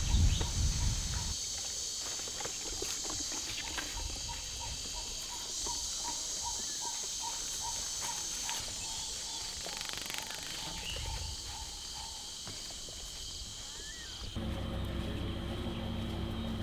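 Insects chirring in a steady high-pitched drone, with a quick run of short repeated notes for several seconds in the middle. Near the end the sound changes abruptly to a steady low hum with several held tones.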